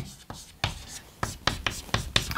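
Hand-lettering on a chalkboard: a quick, uneven series of sharp taps and short scratches as the letters are stroked onto the board.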